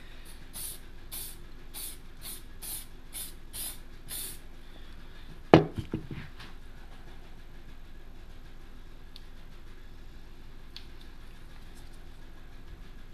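Aerosol spray can of clear lacquer sprayed in short hisses, about two a second and coming quicker, for the first four seconds. Then one loud clunk with a couple of smaller knocks, as the metal can is set down on the bench.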